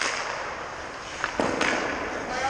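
Sharp cracks of hockey pucks struck by sticks or hitting pads and boards, one right at the start and another about a second and a half in, each with a short echo, over a low steady hiss.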